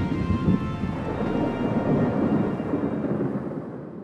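Deep, thunder-like rumble from a logo sound effect, fading slowly away over about four seconds, with a faint held music note under it.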